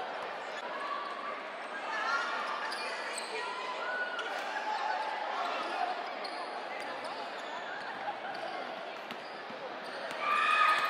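Crowd chatter and calls echoing through a gymnasium during a basketball game, with scattered ball bounces and a sharper knock about eight seconds in.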